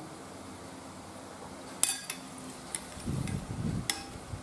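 A few light clinks of a utensil against a glass bowl of beaten egg: a sharp one with a brief ring about two seconds in, smaller ticks after it, and another sharp clink near the end, with a soft rustle of handling in between.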